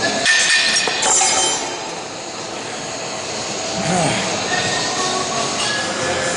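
A person coughs once at the start, then a busy gym's background: steady din, voices, and weights and metal equipment clinking.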